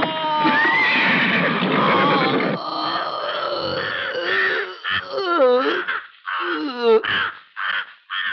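A man crying out and groaning in pain, several drawn-out cries that waver sharply in pitch in the second half, after a dense noisy opening.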